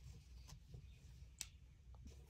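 Near silence: quiet room tone with a low hum and two faint, short clicks from hands working a metal crochet hook through cotton yarn, one about half a second in and one just before the end.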